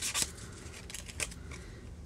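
An emery board filing the edge of a paper tag with a napkin glued to it. A last short scratchy stroke or two comes at the very start, then only faint paper handling with a couple of light ticks as the filing stops.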